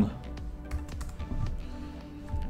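Computer keyboard typing: a few scattered keystrokes as a short message is finished and sent.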